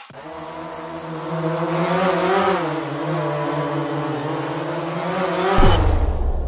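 A steady, buzzy motor hum whose pitch wavers and rises slightly about two seconds in. Near the end it gives way to a low whoosh-and-boom.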